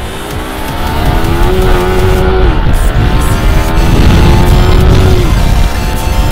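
Small single-cylinder sport motorcycles, a KTM RC 200 racing a Yamaha R15, accelerating hard. The engine note climbs and breaks off at a gear change about two and a half seconds in, then climbs again until another shift near the end.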